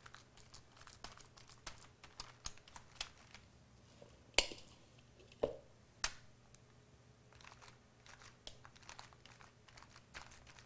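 Parchment paper crinkling and rustling under hands pressing and shaping soft burger patties, with many small clicks and taps. A sharper knock comes a little past four seconds in, followed by two smaller ones.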